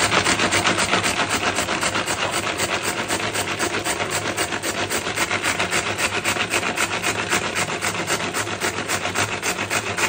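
Plastic food chopper running, its blades chopping ingredients in the bowl with a fast, even, rhythmic rasping of about five strokes a second.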